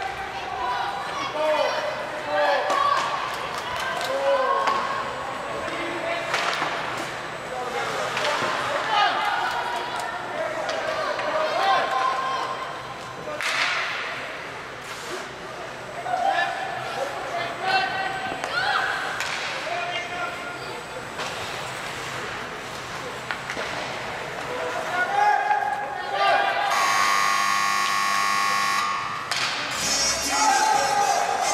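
Voices calling out across an indoor ice hockey rink, with scattered sharp knocks of sticks and puck. Near the end, a loud arena buzzer sounds as one steady blast of about two and a half seconds.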